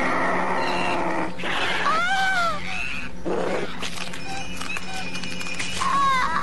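Creature sound effects for the Sumatran rat-monkey, a fanged snarling beast in the film: a shrill screech that rises and falls in pitch about two seconds in, a short harsh snarl just after, and another screech near the end.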